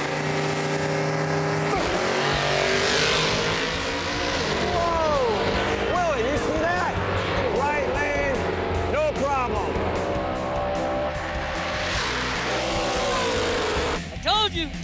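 Drag-racing cars running at full throttle, a 1964 Chevy Nova with a 434 cubic inch V8 against a 1996 Ford Mustang, under a music bed. The engines come in about two seconds in, and whooping voices rise and fall over them in the middle.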